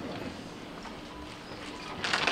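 Quiet room tone of a large hall, with faint footsteps crossing a stage.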